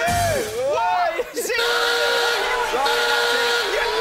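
Men yelling and hollering excitedly over game-show background music, with some long drawn-out shouts.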